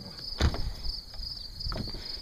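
Insects trilling steadily in a high, continuous chorus, with a single dull thump about half a second in.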